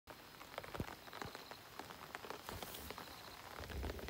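Faint rain falling on open water: a steady light hiss with many small, irregular drop ticks.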